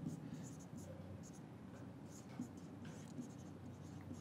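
Dry-erase marker writing on a whiteboard: a series of faint, short strokes as letters are drawn.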